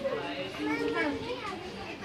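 Several people's voices talking over one another in the background, some of them high-pitched, with no clear words.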